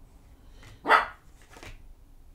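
A single short dog bark about a second in, the loudest sound here, over soft slaps and rustles of a tarot deck being shuffled by hand.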